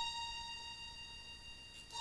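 Teenage Engineering OP-1 synthesizer sounding one steady, high-pitched note through a long reverb, slowly fading away. A new note starts near the end.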